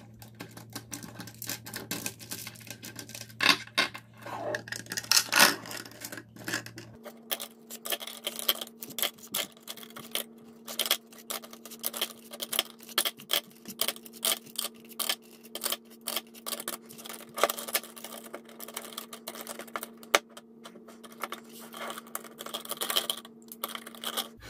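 Plastic lipstick tubes and lip pencils clicking and clattering against each other and against a clear acrylic organizer as they are packed in by hand. There are many quick taps throughout, with a couple of louder knocks a few seconds in.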